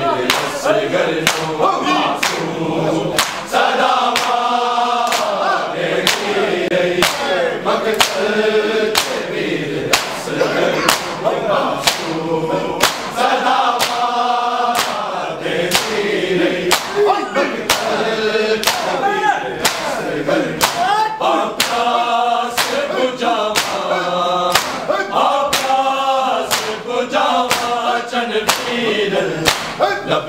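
A noha, a Shia lamentation chant, sung in chorus by men's voices, with a steady beat of open-hand slaps on bare chests (matam) keeping time.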